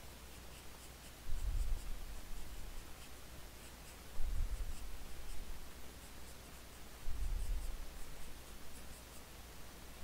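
HB graphite pencil sketching on drawing paper: faint, light scratching strokes. A soft low bump recurs about every three seconds and is louder than the strokes.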